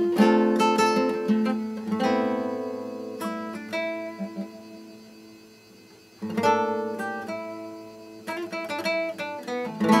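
Nylon-string classical guitar played solo, fingerpicked and strummed chords ringing out. One chord dies away almost to nothing before a new chord is struck about six seconds in.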